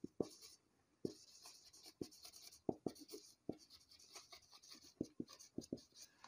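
Marker pen writing on a whiteboard: faint, irregular short squeaks and taps from the pen strokes.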